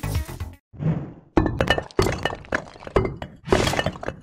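Cartoon soundtrack music cuts off about half a second in. It is followed by a run of sharp thuds and cracking hits, about one every half second, with a loud hit near the end: the title sting of stone letters crashing into place.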